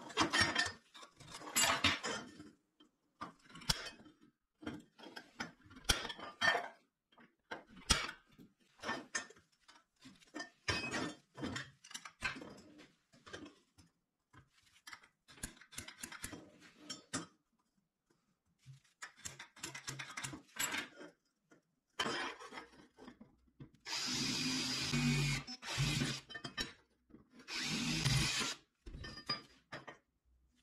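Metal-on-metal clicks and scraping as a steel marking gauge, scriber and round steel tube are handled on a steel welding table. Near the end a power drill runs in three short bursts, drilling a hole through the tube.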